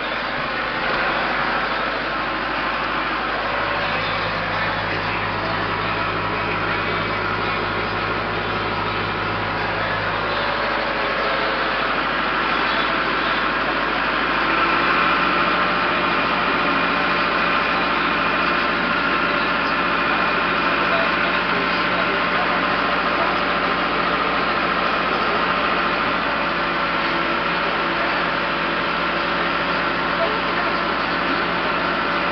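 Farm tractor engine running steadily while driving, heard from the operator's seat; it gets a little louder about halfway through.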